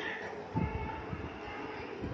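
Low rumbling and rustling handling noise, starting about half a second in, as the cloth and a measuring tape are moved by hand.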